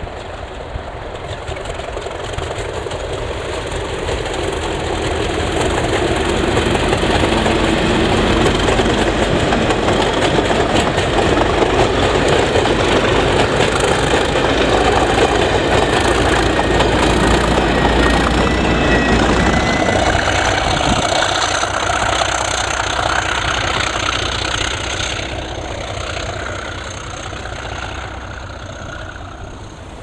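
Colas Railfreight Class 37 diesel locomotive, with an English Electric 12CSVT V12 engine, working under power as a test train approaches, passes close by and draws away. The engine sound builds up, is loudest in the middle as the locomotive goes past, and then fades.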